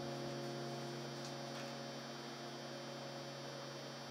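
Steady electrical mains hum with a stack of even overtones, heard under the last electric keyboard notes as they fade away.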